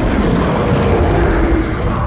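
A loud, harsh monster roar, the Demogorgon creature sound effect from a film soundtrack, held as one long roar.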